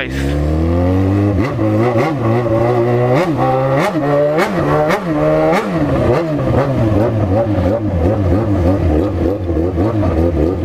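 Yamaha XJ6's inline-four engine, heard from the rider's seat: the revs drop over the first second, then the throttle is blipped in a run of quick rises and falls about twice a second, before the engine settles to a steady note at low speed.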